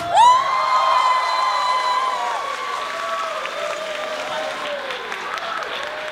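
Guests applauding and cheering as the dance music stops, with one long high whoop that rises at the start and is held for about two seconds, then lower wavering cheers over the clapping.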